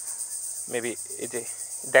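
A steady, high-pitched pulsing hiss, like a cricket or insect chorus, runs under a couple of quiet spoken syllables about a second in.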